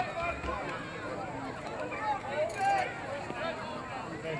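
Several voices overlapping across a youth football field: coaches, players and spectators calling out and chattering, with no single speaker standing out.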